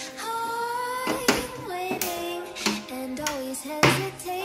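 Background song: a singer holding long notes that slide between pitches, over music with a few sharp percussion hits.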